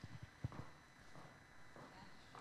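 Near silence: room tone, with a short faint knock about half a second in and a few softer ones after it.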